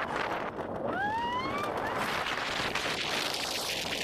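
Wind rushing over the microphone of a camera riding on a moving roller coaster train, a steady roar of air, with a short rising whine about a second in.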